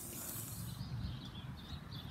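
Faint outdoor background noise: a low rumble, with a high hiss that drops away about a second in.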